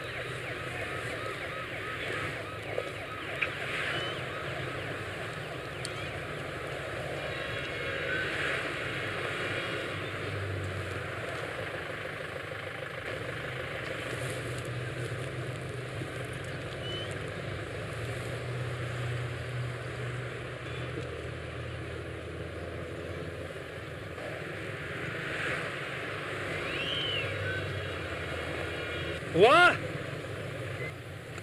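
Night-time outdoor ambience with a steady low vehicle hum and faint distant voices. Just before the end comes one short, loud sound rising sharply in pitch, a shout or a siren whoop.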